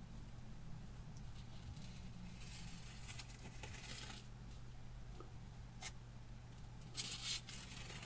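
Craft-knife blade drawn through soft foam along a metal straight edge: faint scraping cuts, a longer stroke about two and a half seconds in and a short one near the end.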